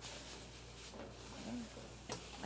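Potatoes frying in a deep fryer, giving a steady, low sizzle of hot oil. A brief faint voice sounds about one and a half seconds in.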